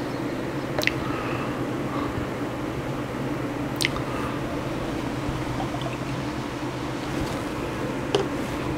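Small glass liquor bottle clicking against a drinking glass, twice sharply, about a second in and again near four seconds, with a few fainter taps, over a steady low hum.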